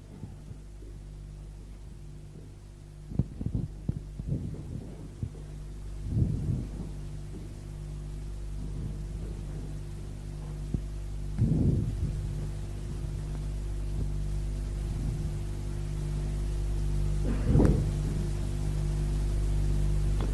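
Steady low hum on an old sermon tape recording, with a few soft knocks about three to five seconds in and three dull low thumps spread through the pause, the last the loudest.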